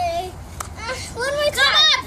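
Young girls' voices at play: a sung note trails off at the start, then high, excited vocalizing builds and is loudest near the end.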